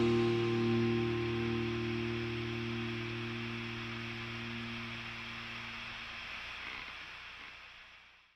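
A rock band's final chord ringing out and fading: electric guitar through a Marshall tube amp and bass sustaining one low chord that dies away about six seconds in, leaving a fading wash of hiss.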